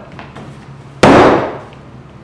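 A wooden canoe paddle struck hard once against a ballistic nylon boat-skin panel stretched over a wooden frame: a single loud, sharp smack about a second in, fading within half a second.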